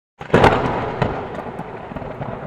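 Loud crash sound effect of something bursting apart: a sharp hit about a quarter second in, a second hit about a second in, then a scattering noise that slowly dies away.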